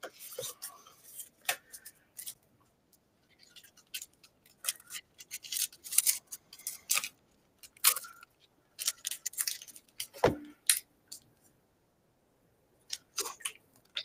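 Scattered faint clicks and short crinkling rustles of trading-card booster packs and cards being handled, about a dozen small sounds spread unevenly, with the busiest stretch around the middle.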